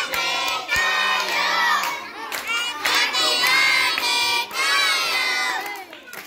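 A crowd of children's voices shouting together, high-pitched and loud, with a brief dip about two seconds in.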